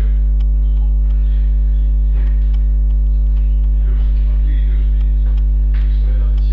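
Loud, steady electrical mains hum at about 50 Hz with a stack of overtones, unchanging throughout, with only faint scattered sounds above it.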